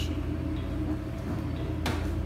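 Steady low hum of operating-theatre machinery and ventilation, with one sharp click near the end.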